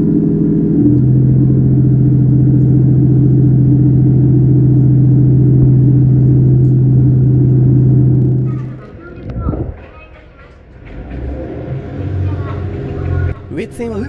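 GV-E400 series diesel-electric railcar heard from inside the car, its underfloor diesel engine running hard with a loud steady drone that steps up about a second in as the train pulls out. About eight and a half seconds in, the drone drops away sharply, leaving quieter running noise that builds again near the end.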